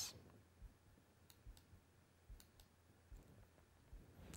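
Near silence: room tone, with a handful of faint, scattered clicks.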